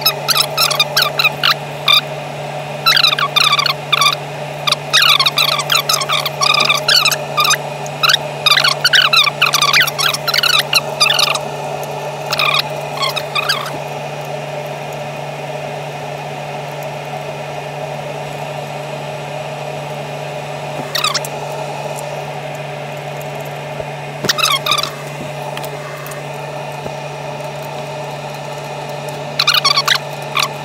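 Small clicks and clatter of metal screws and 3D-printed plastic clamps and step blocks being handled and fitted on a mill's metal table, busiest in the first half and in a few short bursts later, over a steady hum.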